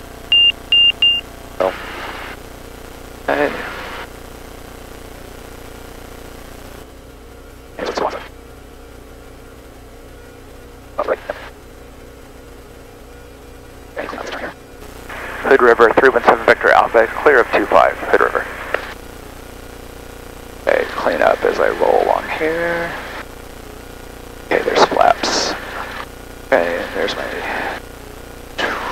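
Voices over the cockpit headset, above a steady low hum from the light aircraft's engine running at idle during the landing rollout. A quick run of short, high beeps comes right at the start.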